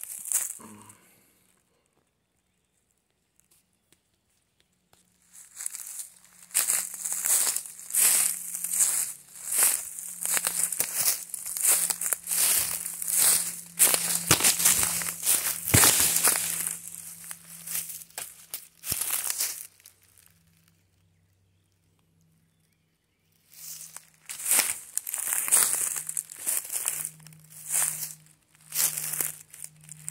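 Footsteps crunching through dry leaf litter on a forest floor, a rapid run of crackling steps with two pauses of near silence, one early and one about two-thirds through.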